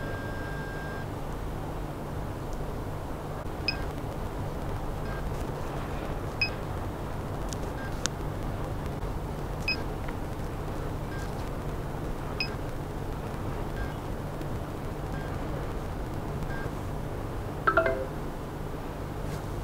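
A steady low hum under a short, faint high beep roughly every three seconds.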